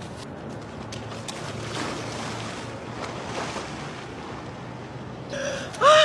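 Wind on the microphone over the noise of surf at the shoreline. Near the end a woman's voice breaks in with gasping, rising cries from the shock of the cold water.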